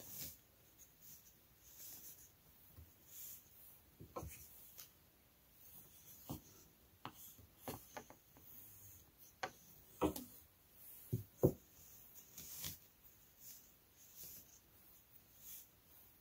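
Faint, scattered clicks and rubs of a pack of tablet-weaving cards being turned by hand, with the weft worked in at the band.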